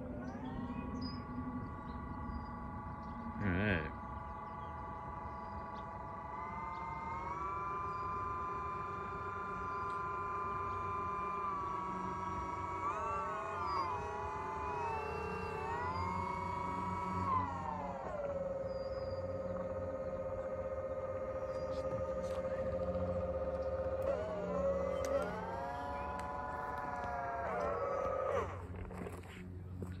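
Twin propeller motors of a small radio-controlled fan-boat drone, a steady whine whose pitch rises and falls in steps with the throttle. It holds steady, steps up about seven seconds in, wavers between about 12 and 17 seconds as the boat is steered, then settles lower and wavers again before cutting off near the end. A short sharp sound comes about three and a half seconds in.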